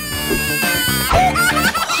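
A grown woman wailing like a crying baby: one long high cry, falling slightly in pitch, then short whimpering sobs, over background music.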